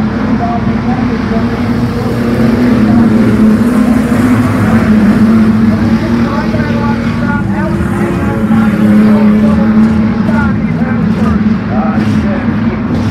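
Street stock race cars running at racing speed as a pack, their engines making a loud, steady drone that swells twice as the cars come past.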